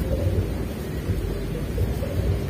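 Steady low rumble of wind buffeting the microphone, with no distinct events.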